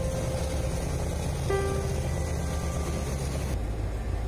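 Hovercraft engines and lift fans running with a steady low rumble as the craft sits on its air cushion, under background music with a few sustained bell-like notes.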